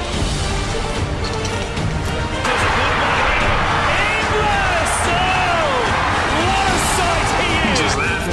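Background music under a stadium crowd that breaks into loud cheering about two and a half seconds in and keeps going, as a rugby league try is scored.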